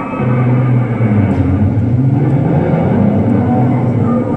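A car engine running on a film soundtrack played over an arena's sound system: a low, steady hum that sets in just after the start, with music beneath it.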